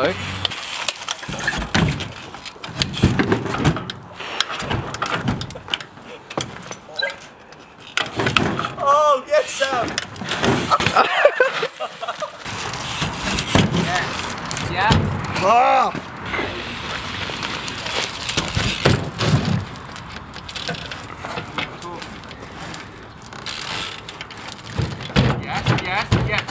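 A mountain bike hopping across old appliances and wooden planks: repeated knocks and thuds of the tyres landing on the sheet-metal tops of a fridge-freezer and washing machine and on the planks, with voices calling out now and then.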